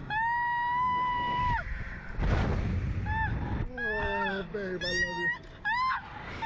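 Riders on a Slingshot reverse-bungee ride screaming: a woman's long high-pitched scream held for about a second and a half, then a burst of wind noise on the microphone. After that come shorter wavering screams joined by a lower voice, with another scream near the end.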